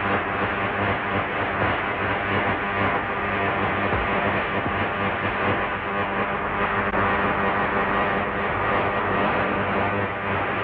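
Steady, dense electrical humming and buzzing of a laboratory apparatus sound effect as the machine is switched on and running.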